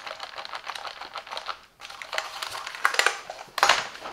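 Silvercrest gaming keyboard being handled and turned over: its keys and plastic housing clatter in many small clicks, with a brief lull partway through. A louder clatter comes near the end as it is set down upside down on a wooden desk.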